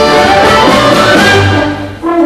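School concert band with brass, saxophones, flutes and violins playing a loud, full passage that dies away sharply just before the end.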